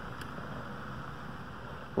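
Steady hiss of background room noise, with one faint tick about a fifth of a second in.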